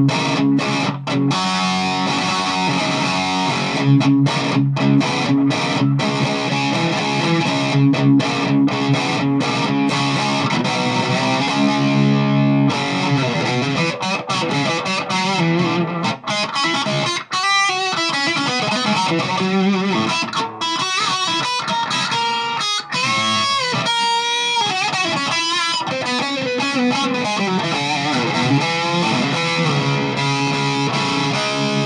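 PRS SE Custom electric guitar played through a Peavey Valve King 50-watt tube combo with heavy distortion. For about the first twelve seconds it plays a chugging riff of low chords with short regular stops. It then moves to single-note lead lines with bent notes.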